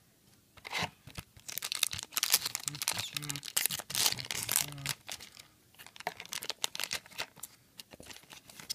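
Foil Yu-Gi-Oh booster pack wrapper being torn open by hand: dense crinkling and crackling, busiest from about two to five seconds in, then thinning out to a few scattered rustles.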